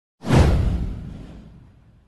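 A whoosh sound effect with a deep low boom, starting suddenly and fading away over about a second and a half.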